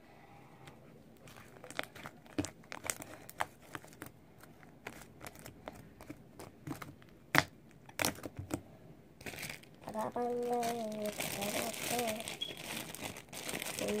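Sticky slime being kneaded and stretched by hand, giving irregular sharp clicks, pops and crackles. Near the end a girl sings 'da da da' over it.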